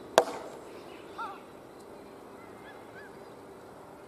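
A single sharp knock, the loudest sound, just after the start, followed by bird calls: a short two-note call about a second in and three fainter, short chirps near the middle.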